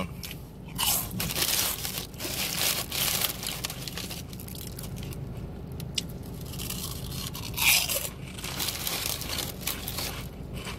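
A person chewing crunchy fries close to the microphone, in irregular crunches, the loudest about eight seconds in.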